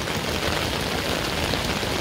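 Steady rain falling, an even hiss with no let-up.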